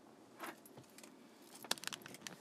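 Computer keyboard and mouse clicks during photo editing: one soft click about half a second in, then a quick run of sharp clicks near the end.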